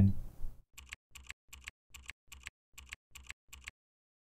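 Keyboard keystrokes, about eight in an even rhythm of roughly two and a half a second, each a quick double click; they stop near the end.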